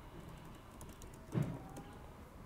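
Typing on a computer keyboard: a scatter of light key clicks, with one louder knock a little over halfway through.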